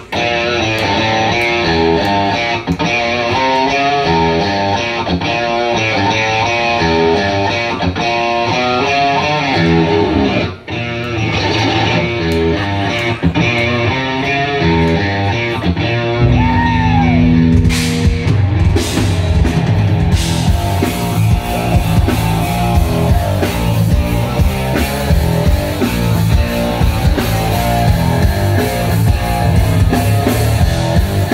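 Live instrumental rock by a power trio: electric guitar plays a busy, repeating note pattern, then the low end of bass guitar and drum kit comes in heavily about sixteen seconds in, with cymbals joining a few seconds later.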